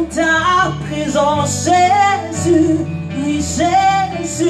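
Slow gospel worship music: a woman singing a drawn-out melody over instrumental backing, with held bass notes that change every second or two.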